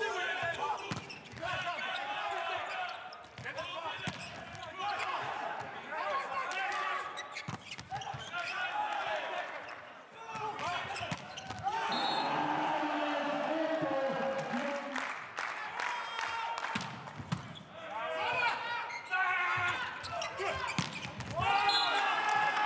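Live volleyball rally sound in a large, nearly empty hall: repeated sharp hits of the ball off hands and floor, mixed with players' shouts echoing around the arena.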